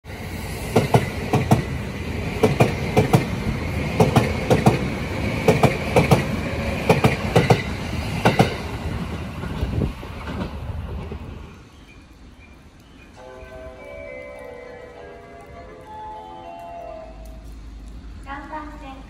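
JR 209 series electric train running past and away along the platform: its wheels clack over the rail joints in quick pairs of beats under a steady high whine, fading out about ten seconds in. Fainter stepped tones follow near the end.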